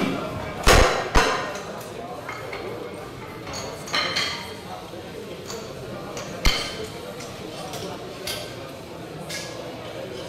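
Loaders changing weight plates on a bench press barbell: metal clanks of plates and collars against the bar sleeves, two loud ones about a second in and lighter ones later.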